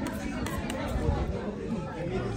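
Several people chattering in conversation, with a few faint clicks.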